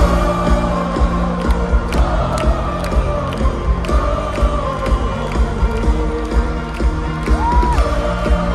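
Live pop-rock band playing through a stadium PA, with heavy bass and a steady drum beat, and a held high note near the end. The crowd cheers over it.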